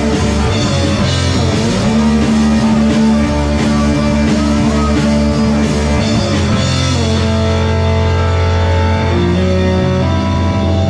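Rock band playing: electric guitars holding chords over drums, the chord changing twice in the second half.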